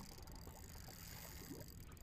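Near silence: a faint, steady low background rumble with no distinct event.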